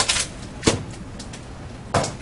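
A few short clicks or knocks, one at the start, one about two-thirds of a second in and one near the end, over low room noise.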